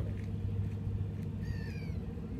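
A single short animal call with a slightly falling pitch, about one and a half seconds in, over a steady low rumble.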